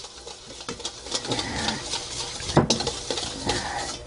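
Light, scattered clinks and taps of kitchen utensils against a bowl or board, with one louder knock about two and a half seconds in.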